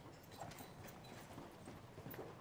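Faint footsteps on a hard floor: light, irregular tapping.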